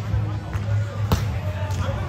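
A volleyball struck once by hand about halfway through: a single sharp smack with a short echo, over a background of voices and music.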